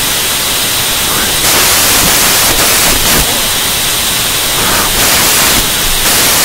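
Loud, steady static hiss filling the audio, its highest part brightening and dulling in steps every second or two.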